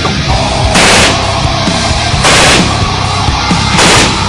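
Loud heavy metal music playing, with three short bursts of rifle fire about a second and a half apart, the last at the very end.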